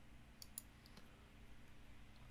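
Near silence with a few faint computer mouse clicks about half a second in, as a dimension is placed in the CAD program.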